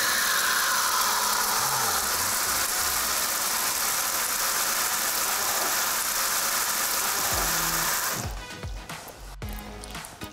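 Water running from a tap onto a shower tray and draining down the pop-up waste: a steady rush that stops about eight seconds in.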